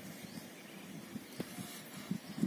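A bull digging its horns into a mound of loose soil: faint scuffing and dull thuds of earth, with one sharp knock about a second and a half in.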